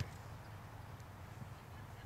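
Quiet open-air ambience on a playing field: a low steady rumble with a faint click at the start and another about a second in.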